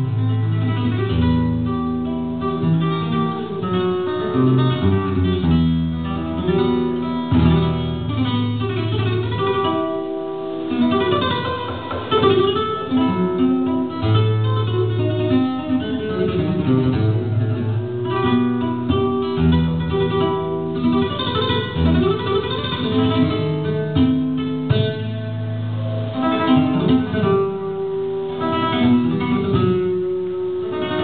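Solo flamenco guitar played live por alegrías: melodic picked lines over changing bass notes, with denser, busier passages along the way.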